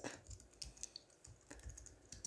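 A short run of faint keystrokes on a computer keyboard, typing a word.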